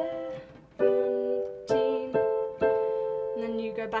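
Yamaha portable keyboard playing held chords, a new chord struck about once a second, with a low note added near the end.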